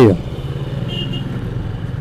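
Motorcycle engine running steadily at low speed, a low even hum, with a brief faint high tone about a second in.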